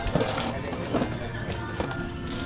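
Indistinct voices of other diners over faint background music.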